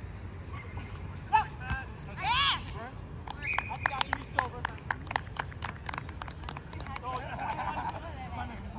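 Players shouting short calls across an open field. Then a short, high, steady tone and a quick, irregular run of sharp clicks, with mixed voices near the end.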